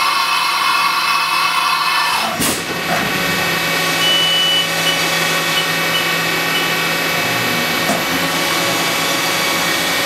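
CNC machining center's automatic tool changer swapping tools: a whirring that ends in a sharp clunk about two and a half seconds in as the abrasive deburring brush is loaded into the spindle. After the clunk the machine runs steadily, with a hum and several fixed whining tones.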